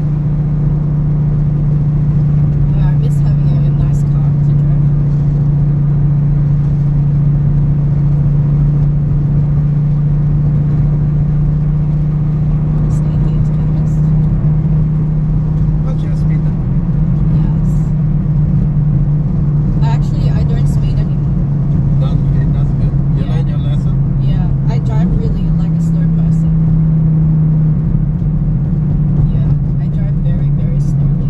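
Lamborghini's engine droning steadily while cruising, heard from inside the cabin, with road noise underneath. Its pitch wavers slightly about halfway through and briefly steps higher near the end.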